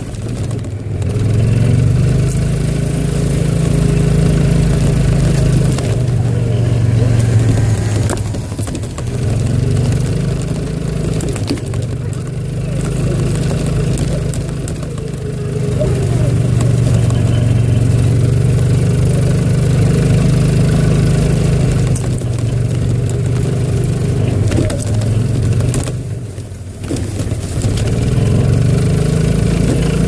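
Golf cart engine running as the cart drives along a trail. Its note rises and falls several times as it speeds up and eases off, with a brief drop about 26 seconds in.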